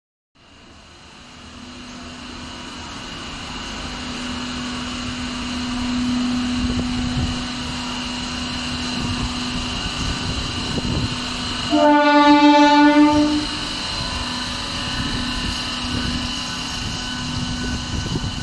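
MEMU electric train pulling out of a platform: a steady hum from the moving train that grows louder over the first few seconds. About twelve seconds in, the train's horn sounds once for about a second and a half.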